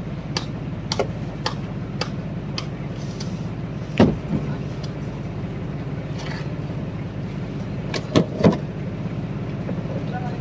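Blocks of ice knocking against each other and the boards of a wooden boat's fish hold as they are loaded in. There is one heavy knock about four seconds in and two in quick succession near eight seconds, over a steady low motor hum with faint ticks about twice a second.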